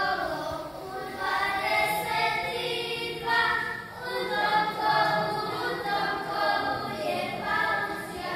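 Group of young children singing a Posavina folk song together, their voices rising and falling in phrases.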